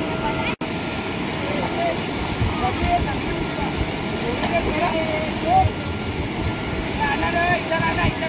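Outdoor background noise: a steady rushing haze with faint, distant voices scattered through it. The sound cuts out for an instant about half a second in.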